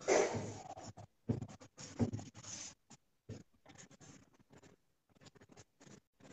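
Charcoal pencil scratching across Bristol drawing paper in short, irregular strokes, loudest in the first couple of seconds and then lighter.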